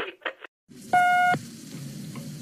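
The last notes of a brass-backed 1940s song, a brief dropout, then the hiss of an old radio broadcast recording with a single steady beep lasting under half a second about a second in.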